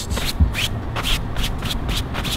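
Soft-bristle hand brush sweeping over a fabric convertible top in quick repeated strokes, about four a second, brushing loose dirt off the cloth.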